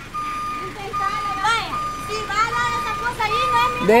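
Kia K2700 light truck's reverse warning beeper sounding one steady high tone in long beeps with short gaps between them, the sign that the truck is in reverse gear.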